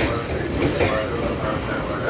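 Pakistan Railways passenger coaches rolling past as the train arrives at the station, the wheels running steadily on the rails.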